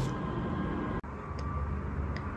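Faint steady low hum with one or two light clicks.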